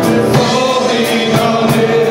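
Live worship band playing: voices singing long held notes over acoustic and electric guitars and a drum kit keeping a steady beat.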